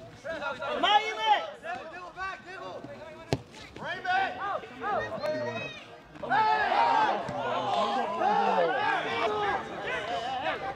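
Players and spectators shouting and calling out during a soccer match, the voices overlapping and growing louder and busier past the middle as play reaches the goalmouth. One sharp knock about a third of the way in.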